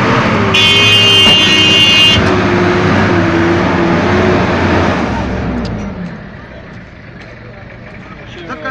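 A Toyota van's engine running close by as the van creeps past through slush. It is loud for about five seconds, then fades. A bright, high tone sounds for about a second and a half near the start.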